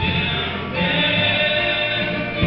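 A mixed choir singing a gospel song, led by a male soloist on a microphone, with guitar accompaniment. The voices come in right at the start and swell about a second in.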